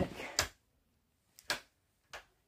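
Two sharp clicks about a second apart, typical of a wall light switch being flicked.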